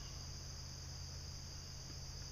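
Faint, steady, high-pitched insect drone, like a cricket chorus, over a low hum.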